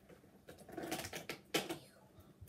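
Light clicking and rustling of a cardboard advent calendar door being opened and its small plastic toy handled, a handful of quick clicks in the second half.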